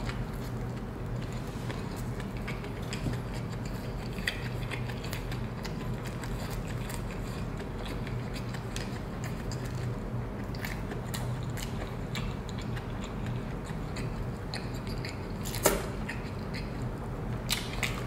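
Chewing a big bite of a Big Mac burger, with soft wet mouth clicks and smacks throughout and one sharper click near the end, over a low steady hum.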